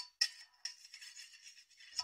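Mostly quiet, with a few faint scattered clicks over a light high hiss.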